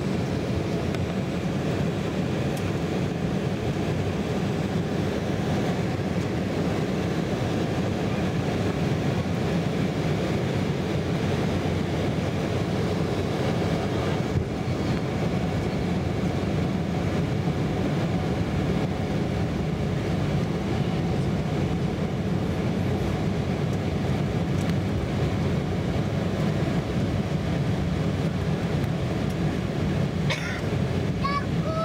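Steady cabin noise of a jet airliner on descent, heard from a window seat beside the underwing turbofan engine: engine and rushing airflow blending into an even, dense low rumble that does not change.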